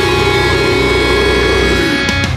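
Metalcore band's distorted electric guitars holding one sustained chord that rings steadily, with no drum hits.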